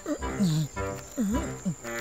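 A cartoon giant's deep, growly voice calling 'bugloo, bugloo', each short call swooping down and up in pitch, about four calls in a row over background music.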